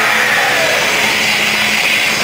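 Live heavy band playing loud and heavily distorted on an overloaded recording: a steady, grinding wall of electric-guitar noise with no clear vocal line.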